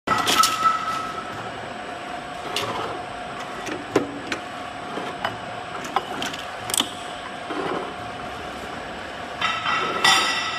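Rotary R.O.P.P. capping machine for wine bottles running: a steady motor hum with a held tone, broken by scattered sharp clicks and knocks, and a brief metallic ringing near the end.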